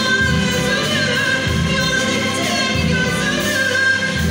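A woman singing in a classical style, holding long wavering notes, with a live string orchestra accompanying her.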